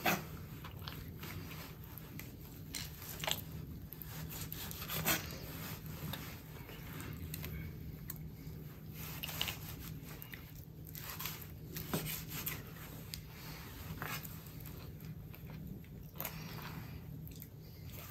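Chef's knife slicing and trimming raw heart on a wooden cutting board: faint, irregular soft cuts with occasional taps of the blade on the board, over a faint steady low hum.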